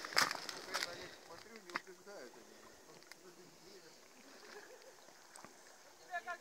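Quiet open-air ambience with faint, distant voices and a few light clicks in the first two seconds, then little but a soft hiss.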